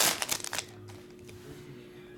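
Foil wrapper of a trading card pack crinkling and tearing as it is ripped open, in the first half second or so. After that it goes quiet apart from a faint steady hum.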